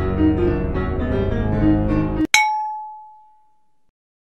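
Instrumental music stops abruptly just after two seconds. A moment later comes a single loud metallic clang, whose one clear ringing tone fades away over about a second and a half.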